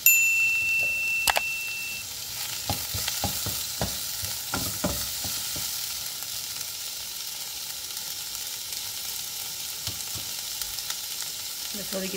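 Onions, tomatoes and green chillies frying in a non-stick pot with a steady sizzle, while a wooden spoon stirs and knocks against the pot in a run of taps a few seconds in. A single metallic ding opens it and rings for about two seconds.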